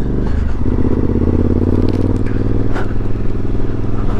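Suzuki V-Strom motorcycle engine running at low road speed, its note dipping briefly near the start and then holding steady. A few sharp clicks and a crackle of tyres over rock-strewn tarmac are mixed in.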